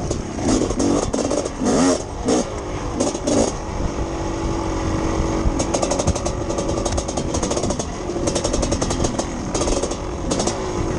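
Two-stroke dirt bike engine revving up and down in quick bursts as it rides a rough trail, steadying briefly, then running with a rapid rattle through the second half.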